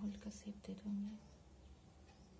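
A woman's voice making short sounds for about the first second, then quiet room tone.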